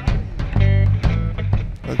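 Live electric blues band: an electric guitar fill between the sung lines over drums and bass, the singer coming back in right at the end.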